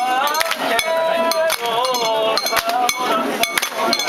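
Rapid metallic clinking and jingling, many quick strikes, mixed with crowd voices calling and chanting in long drawn-out tones.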